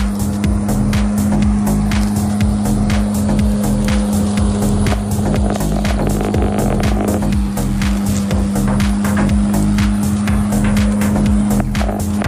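Background music with a steady beat over the constant hum of a corded electric lawn mower running.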